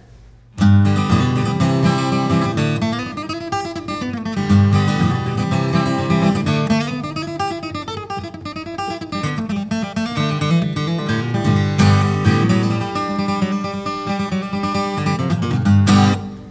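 Taylor 314 grand auditorium acoustic guitar (Sapele back and sides, spruce top) flatpicked through a bluegrass lick of single-note runs and strummed chords, with a bright top end and push in the mid-range. The playing starts about half a second in and stops right at the end.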